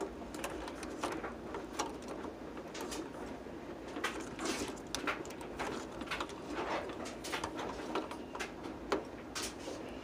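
Faint scattered clicks and light scrapes of handling as fingers move over a power amplifier's back panel and its fuse holder, over a low hum.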